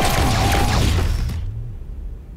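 Film sound effect of a loud noisy blast with a low rumble, dying away about a second and a half in.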